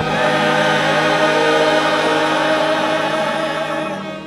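Church choir singing slow, long-held chords.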